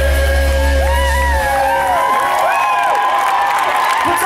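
A live band with a brass section holds a closing chord over a sustained bass note that cuts off about a second and a half in. An arena crowd cheers and whoops over it and after it.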